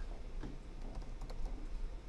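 Typing on a computer keyboard: a few soft, scattered keystrokes.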